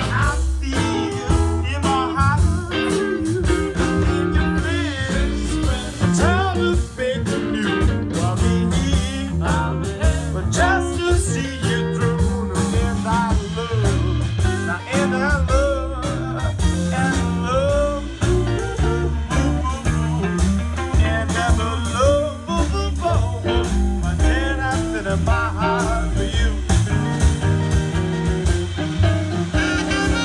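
A live blues band playing loudly and steadily: saxophone with two electric guitars over bass and drum kit.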